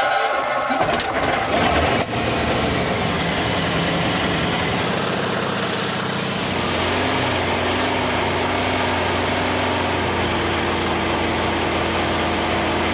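A small aircraft's piston engine starting up and running, with a few clicks in the first two seconds. About six seconds in it settles into a steady running note.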